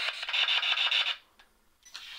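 Static hiss from a ghost-hunting spirit box, a radio rapidly sweeping through stations, chopped by a fast, even stutter. It cuts off abruptly a little over a second in.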